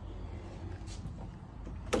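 Low, steady rumble of a handheld phone being carried, with a sharp click near the end as a door latch is worked.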